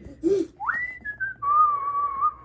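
A person whistling: a quick upward-sliding whistle, then a lower held note that wavers slightly, a bird sound effect for a small bird flying in.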